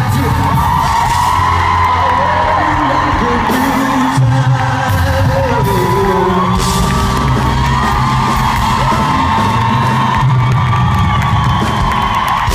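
Live band performance: a male lead singer holding long, gliding sung notes over drums and bass.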